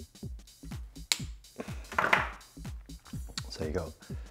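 Electronic background music with a steady kick-drum beat. About a second in comes a sharp snip as side cutters cut through a wire, then a brief, louder rustling scrape.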